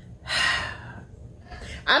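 A woman's audible breath, one breathy rush lasting about half a second, without voice.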